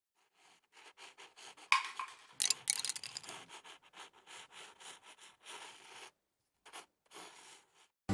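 Pencil scribbling on paper: a quick, irregular run of scratchy strokes. The strokes are loudest about two seconds in, pause briefly near the end, then stop.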